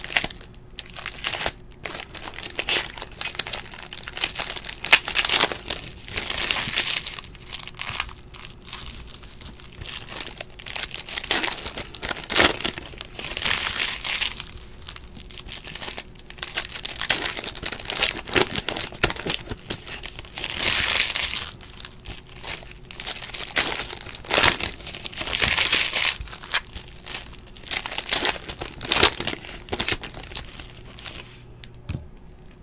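Foil trading-card pack wrappers being crinkled and torn open by hand close to the microphone, in irregular bursts.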